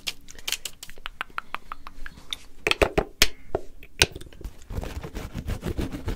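Fingers tapping and scratching on surfaces right at a microphone: a fast, irregular run of sharp taps, the loudest around the middle, turning to denser scratchy rustling in the last second or so.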